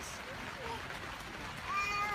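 A quiet stretch with faint background voices. Near the end a person's voice begins a long, drawn-out "yes".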